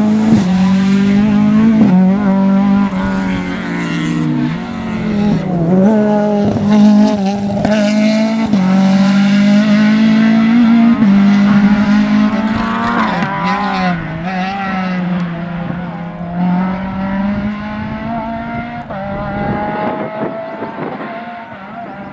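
Rally car engine running hard at high revs, its pitch dipping briefly several times, then fading as the car draws away near the end.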